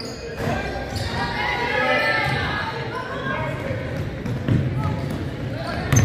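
Basketball bouncing on a hardwood gym floor as a player dribbles, low thuds in the second half, over shouting voices of players and spectators echoing in the gymnasium.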